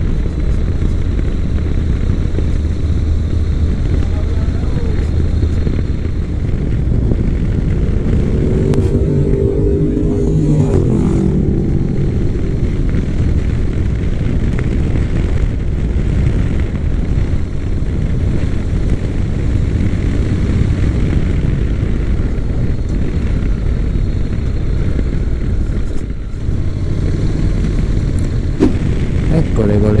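Honda NC700X motorcycle's parallel-twin engine running at road speed, with steady wind rush over the on-board microphone. A pitched engine note rises and falls about ten seconds in.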